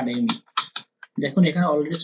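Typing on a computer keyboard: about five quick keystrokes in a short run, between stretches of speech.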